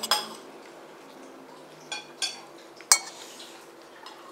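Metal spoon clinking against a ceramic plate while scooping rice: about four sharp clinks, the loudest about three seconds in.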